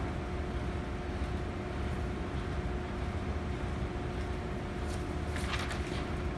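Steady low hum of room ventilation with a faint constant tone running through it. Paper rustles briefly near the end as a cut stencil sheet is picked up.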